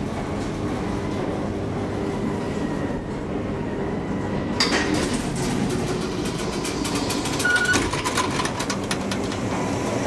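A 1985 KONE inclined elevator cab running up its incline with a steady low rumble and hum. About halfway through, a run of sharp clicks and knocks starts and goes on for several seconds, with a short beep in the middle of it.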